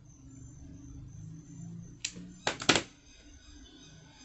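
A hot glue gun set down on a tabletop: a few sharp knocks about two seconds in, the last the loudest, over a faint low hum.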